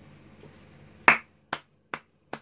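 Three sharp hand claps, a little under half a second apart, starting about a second in; the first is the loudest.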